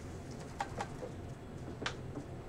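Quiet room tone: a low steady hum with a few faint clicks, about half a second in and again near the end.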